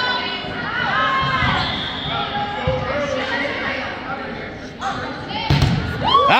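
Indoor volleyball rally in a gym hall: the ball is struck and thuds, with several sharp hits close together near the end, over shouting voices from players and spectators.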